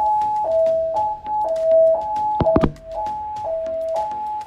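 Hotel fire alarm sounding a two-tone hi-lo alert, a higher and a lower tone alternating about every half second, the alert that comes before the recorded fire evacuation message. Two sharp knocks come about two and a half seconds in.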